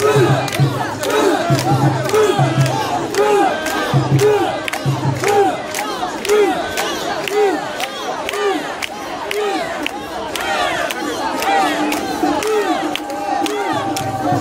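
Mikoshi bearers chanting in unison as they carry the portable shrine, a short rising-and-falling shout repeated over and over about one every two-thirds of a second, over the noise of a dense festival crowd.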